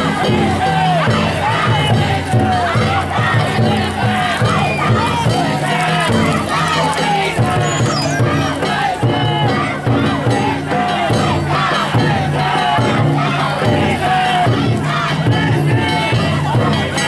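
Crowd of danjiri pullers shouting together as they haul the float, many voices overlapping, over a steady low hum.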